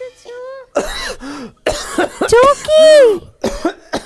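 A person coughing and clearing the throat several times into a microphone, mixed with drawn-out vocal sounds that slide up and down in pitch.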